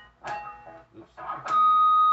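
Electric guitar: a few short picked notes, then about one and a half seconds in a loud, high, sustained note rings out, the squealing overtone of a pinch harmonic picked on the low string.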